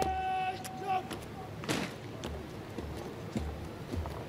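A drill command shouted across the parade ground, drawn out on one held pitch for about a second. Regular low thuds follow, about two a second.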